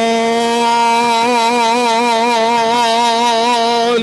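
A man singing one long held note in a gospel style into a microphone; the note is steady at first, then takes on a slow, wide vibrato about a second in.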